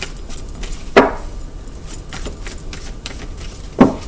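Light clinking and rattling of small hard objects being handled, with two sharper taps, about a second in and near the end.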